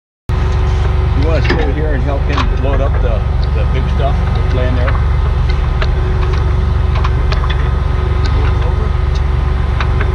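A heavy diesel tow truck idling with a steady low rumble, with light metal clinks as tow chains are hooked to the truck's front end and muffled voices in the first few seconds.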